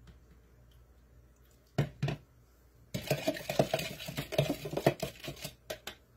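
Kitchenware being handled: two knocks about two seconds in, then a few seconds of rapid clattering and knocking of plastic and glass.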